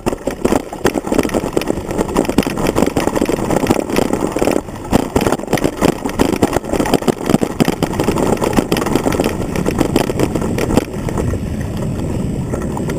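Mountain bike rattling and rumbling over a rough dirt trail, picked up through a handlebar camera mount that carries the frame's vibration: a dense clatter of small knocks over a steady rumble.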